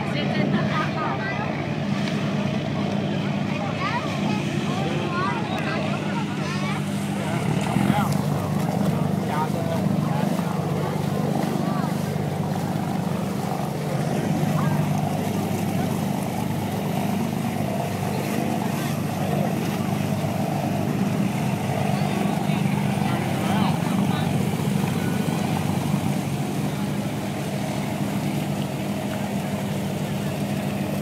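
A junk boat's engine running with a steady low drone, with the chatter of many voices over it.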